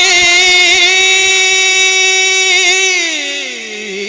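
A male naat reciter's voice holding one long sung note with no words, wavering slightly, then sliding down in pitch near the end.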